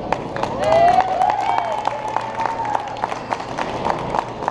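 Sparse, scattered clapping from a small audience, over a steady faint tone, with a brief voice about a second in.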